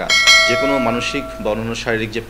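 A bell-like chime struck once, ringing with several clear tones that fade away over about a second and a half.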